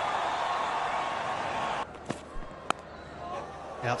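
Stadium crowd cheering a boundary, cut off abruptly a little under two seconds in. A quieter crowd murmur follows, with a sharp crack of bat on ball about two-thirds of the way through.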